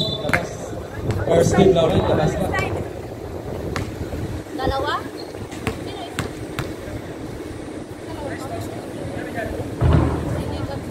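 A basketball bouncing on a hard court, a handful of separate bounces, with people talking around it; a louder low thud comes near the end.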